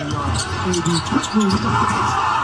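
Basketball game broadcast audio: a ball bouncing on the hardwood court under arena crowd noise, with a commentator's voice. The crowd noise swells near the end.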